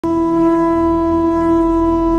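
Conch shell (shankha) blown in one long, steady, unwavering note, sounded as an auspicious opening. A low hum lies under it.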